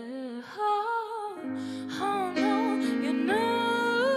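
Live soul/R&B band: a woman sings drawn-out, gliding vocal lines with no clear words over held guitar and keyboard chords, with a bass line coming in about a second and a half in.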